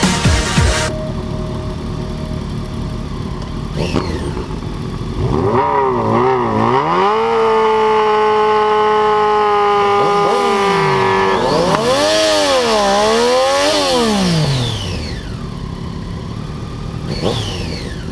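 Sportbike engine revved hard and held at high revs for several seconds while the rear tyre spins in a smoky burnout, then revved up and down twice before falling back to idle. A second of electronic music cuts off at the start.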